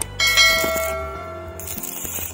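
A bell-like chime strikes about a quarter of a second in and rings with several steady tones, fading away over about a second and a half, over background music.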